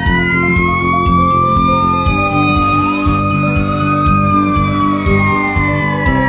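Fire truck siren wailing: the pitch rises, holds, then slowly falls, with a second siren tone gliding beneath it. Background music runs under it.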